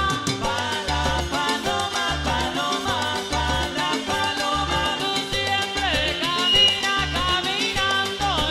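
Cumbia played live by a sonora-style band, with a steady repeating bass line under melodic lines that slide down and back up in pitch.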